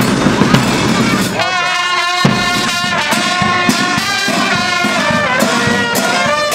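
Brass instruments playing a tune in held notes, coming in about a second and a half in over a dense crackling clatter that fills the start.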